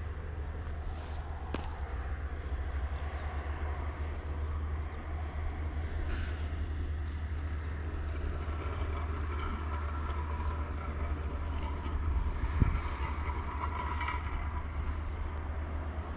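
Outdoor ambience: a steady low rumble with faint distant traffic that swells in the second half, and a single low thump about three-quarters of the way through.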